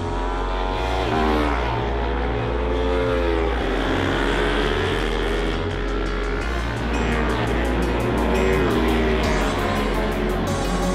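Racing motorcycle engines running at high revs, their pitch rising and falling repeatedly as the bikes accelerate, shift and pass, mixed with background music that has a steady beat.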